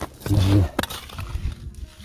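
A person's short, low wordless vocal exclamation, lasting about a third of a second, with a couple of sharp clicks of handling around the ice hole.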